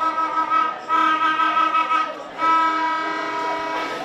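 A horn blown in three long, steady blasts, each holding the same pitch, with short breaks between them.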